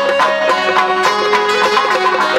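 Chầu văn ritual music: a plucked-lute melody over light, regular percussion.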